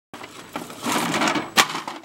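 Crunching and scraping of snow and plastic as a toy garbage truck is shoved off the edge of a snow-covered stone wall and tumbles down, with one sharp knock about one and a half seconds in.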